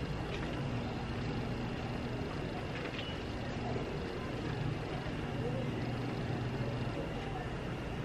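A steady low mechanical hum, like a running engine, under a faint background haze.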